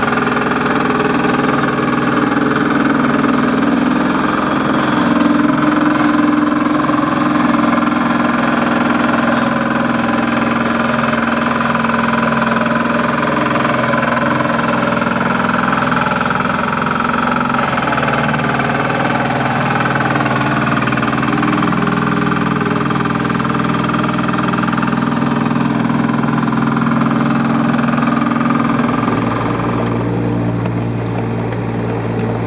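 Engine of a Bomag BW 71 E-2 walk-behind single-drum roller running steadily as the roller is driven over loose soil to compact it; the sound shifts just before the end.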